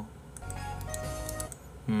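Quiet background music with a few held, chime-like notes; a man's voice comes back in at the very end.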